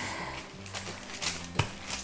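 Quiet background music with steady held low notes, under a rolling pin working stiff dough between sheets of parchment paper: faint rustling of the paper and a single knock about one and a half seconds in.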